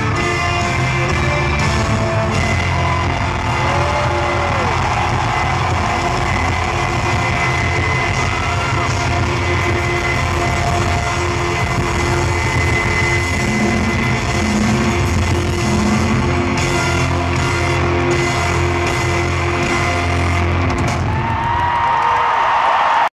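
Live band playing a pop-rock song, with electric guitars and bass under trumpet and trombone, loud and steady, heard from the audience in a large arena.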